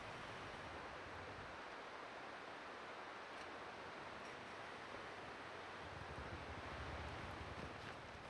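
Faint, steady hiss with a low rumble: a Toyota 4Runner's 4.0-litre V6 heard from a distance as it manoeuvres in deep snow, the rumble growing a little near the end.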